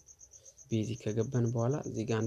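A man's low-pitched voice speaking, starting after a short pause about two-thirds of a second in, over a steady high-pitched pulsing chirp at about eight pulses a second.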